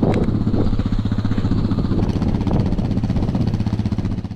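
Small engine of an ATV running at a steady idle, a low, rapidly pulsing drone.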